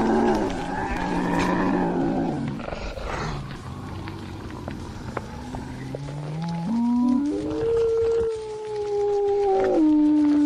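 Werewolf growl and howl: a deep, rough growl for the first couple of seconds, then a low call that climbs in steps and, about seven seconds in, settles into a long, held howl.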